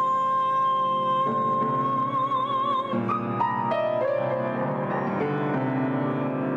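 Grand piano chords under a woman's voice holding one long high note. The note wavers into vibrato and ends about three seconds in, followed by a few shorter sung notes stepping down over the piano.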